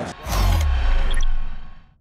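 Short logo sting: a deep boom with a bright swoosh about a quarter second in, a few high chime-like pings, then the sound fades out.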